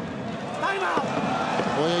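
A male commentator's speech in Russian over a steady background of arena crowd noise.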